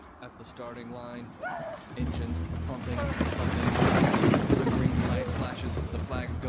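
Sledding down a snowy hill: a rush of wind on the microphone and snow sliding, building about two seconds in and loudest around the middle, with voices calling out over it.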